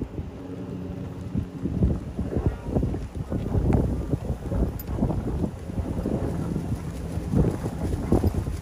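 Wind buffeting the microphone of a golf cart moving along a dirt road, in uneven gusts, along with the cart's low running rumble.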